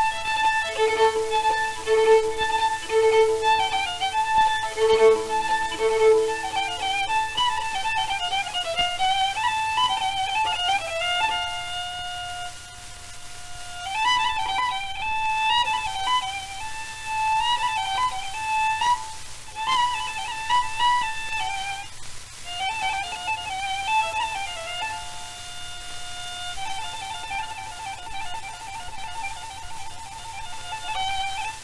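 Solo violin playing a Persian melody, heard from a 1933 78 rpm shellac disc, with the disc's surface hiss throughout. A lower second line sounds under the melody for the first several seconds, and near the end the playing turns to a quick run of rapidly repeated notes.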